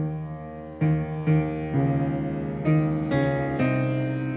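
Solo piano playing a slow introduction: held chords, with a new chord or note struck about every half second.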